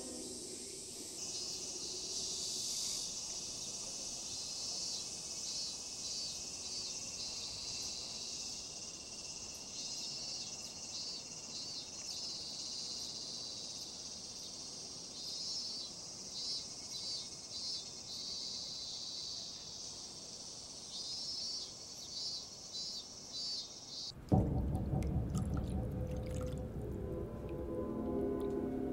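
Insects chirping in a steady high-pitched chorus, with repeated quick pulsing trills. About 24 seconds in it cuts suddenly to a louder low rumble with music over it.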